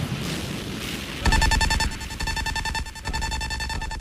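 Electronic mixtape outro: a fading reverberating wash, then about a second in a bass hit and a held synth note that slowly dies away.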